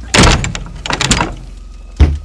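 Horror-film sound design: a sudden loud slam with a noisy crash, then a second crash about a second later, fading away over a low rumble.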